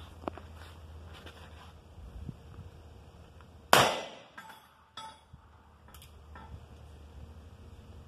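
A single shot from an Uberti 1860 Army replica, a .44 black-powder cap-and-ball revolver, about four seconds in: one loud sharp crack with a short ringing tail. A few fainter clicks follow over the next two seconds.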